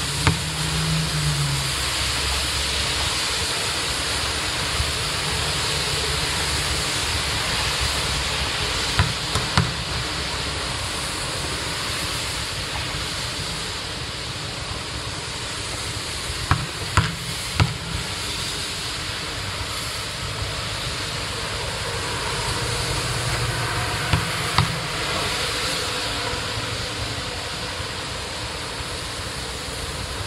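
Steady rain making a constant hiss, with a few sharp knocks in small clusters about 9, 17 and 24 seconds in.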